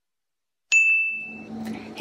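A single bright notification-bell ding sound effect, struck about two-thirds of a second in and ringing out as it fades over most of a second. A faint steady hum of room background follows.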